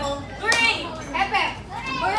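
A group of voices calling out excitedly over one another, several of them high-pitched, in a crowd at a party game.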